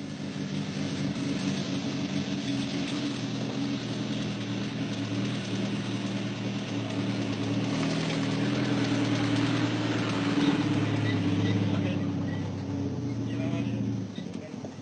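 An engine running steadily at an even pitch, growing a little louder past the middle and dropping off near the end.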